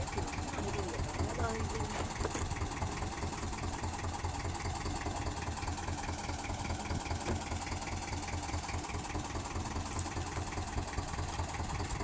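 Fishing boat's inboard engine idling, a low even throb with a steady fast pulse.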